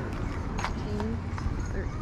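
A few light clicks and clacks of a plastic clothes hanger being handled on a clothes rack, over a low wind rumble on the microphone.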